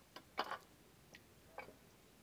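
A few faint clicks of a steel ladle knocking against a pressure cooker and the sheep trotters as it stirs them in water.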